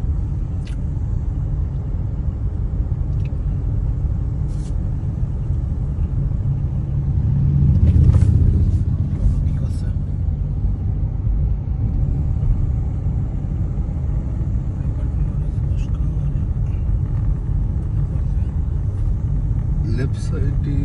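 Steady low rumble of a car driving, heard from inside the cabin, swelling louder for a couple of seconds about eight seconds in.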